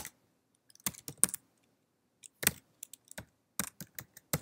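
Computer keyboard typing: separate keystrokes tapped in short irregular clusters while a command is entered.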